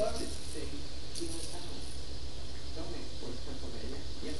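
Faint voice sounds over a steady low hum.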